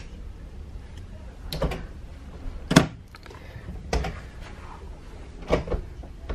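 Cruise-ship cabin balcony door being tugged at: several separate clunks and knocks from the handle and latch, about a second apart, the loudest about three seconds in. The door stays shut because it is being pulled when it opens by pushing outward.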